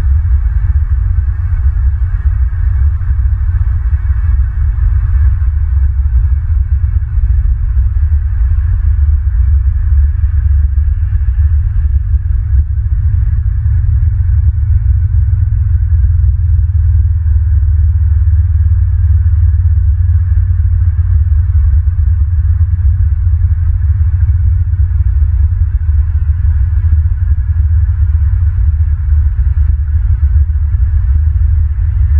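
Steady, loud low rumble on an outdoor microphone, with a faint hiss above it and no bird calls.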